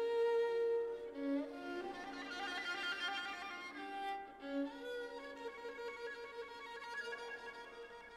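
Solo violin being bowed: a long held note, then about two seconds in a fast quivering passage high up, then a run of shorter and held notes.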